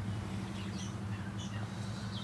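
A steady low hum, with a few faint, short high bird chirps over it.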